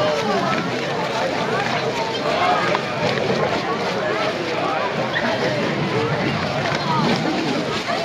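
A pack of foxhounds squabbling over food, a dense unbroken chorus of many overlapping whines and yelps.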